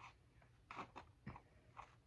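Tape being picked at and peeled off a painted board: a few faint, short crackles.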